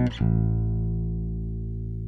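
Dahrendorf Daikatana five-string fanned-fret electric bass, sapele and pao ferro: a short note at the start, then a low note plucked just after and left to ring, fading slowly.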